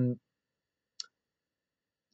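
A man's drawn-out "um" trailing off at the start, then silence broken by a single short, faint click about a second in.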